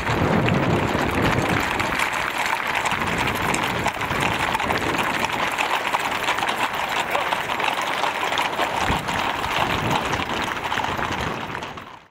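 Hooves of a mounted squadron clattering on asphalt as many horses pass close by, with a murmur of crowd voices underneath; the sound fades out at the very end.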